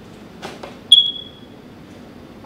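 A light knock, then a single sharp, high ping that rings out briefly, as of a small hard object set down or struck on the table.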